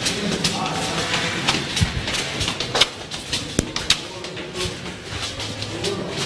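Bustle of a crowd: indistinct voices under a run of irregular sharp clicks and knocks, the sharpest few coming about three to four seconds in.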